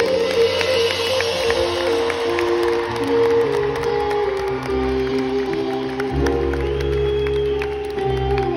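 Rock band playing live in an arena: electric guitar holding long sustained notes that step from pitch to pitch over bass and drums, with crowd noise underneath.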